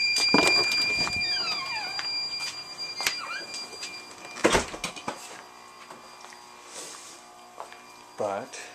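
Iliminator 1750 inverter's low-voltage alarm sounding as a steady high-pitched tone, which stops about four seconds in. It is warning that the battery bank has sagged to about 10.6 volts under the 400 W heater load, close to the inverter's cut-out. Knocks and handling noises come and go around it.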